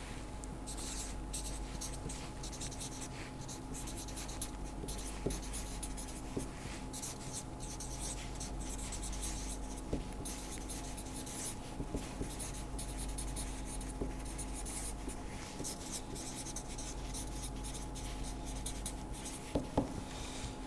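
Marker pen writing on paper: a quick run of short scratchy strokes over a faint steady electrical hum.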